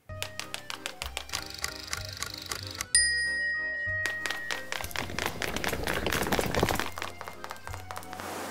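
Background music with a steady beat; a bright chime rings out about three seconds in and fades over the next second or so.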